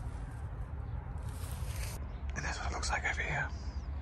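A man whispering a few words a little past halfway, over a steady low rumble; a short rustling hiss comes just before the whisper.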